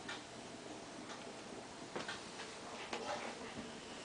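Faint ticking, about one tick a second, over low room noise.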